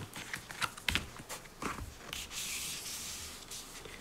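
Tarot cards being gathered up and slid across a wooden tabletop by hand: a few light taps and clicks in the first two seconds, then a soft rubbing, sliding hiss.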